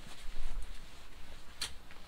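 Low rumble of a handheld camera being moved quickly, loudest in the first second, with a single sharp click about one and a half seconds in.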